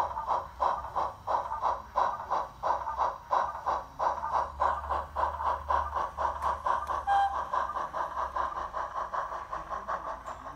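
Recorded steam-engine chuffing of a Peckett saddle tank (Digitrains ZS035A sound file) played by a Zimo MX648R decoder through a small 20 mm speaker in an O gauge model locomotive. It beats in a steady rhythm of about three chuffs a second, with a low hum underneath.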